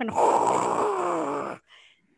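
A woman's vocal imitation of a torrential downpour: a long, breathy hissing "shhh" lasting about a second and a half, with a faint voiced tone falling in pitch under it, that cuts off abruptly.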